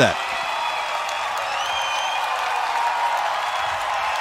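Concert crowd applauding and cheering at the end of a live rock song, a steady wash of clapping and cheers with a brief high whistle-like tone about halfway through.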